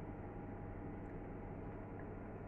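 Quiet room tone: a low, steady hum and faint hiss with no distinct sounds.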